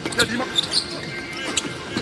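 Basketball dribbled on a hardwood court, a few sharp bounces early on and more spread through, with arena music and faint voices behind.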